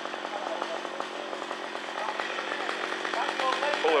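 A small engine running at a steady speed, with a fast, even rattle.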